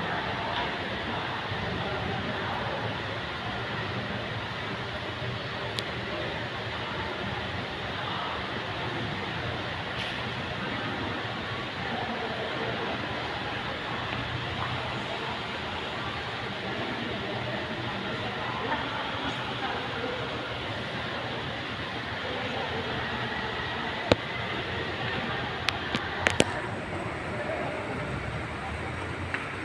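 Indistinct murmur of voices over a steady background hiss, with a few sharp clicks a few seconds before the end.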